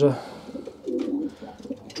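Racing pigeons cooing, a low coo about a second in.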